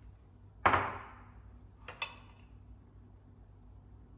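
A small glass bowl is set down on a stone worktop with one loud knock and a brief ring. About a second later there are two quick, sharp clinks of a metal tablespoon against glass as poppy seeds are scooped.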